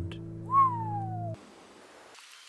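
An acoustic guitar chord rings on as a single whistled note rises briefly and then glides slowly down. Both cut off suddenly a little over a second in, leaving a faint hiss.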